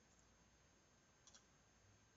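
Near silence: room tone, with a faint double click of a computer mouse a little over a second in.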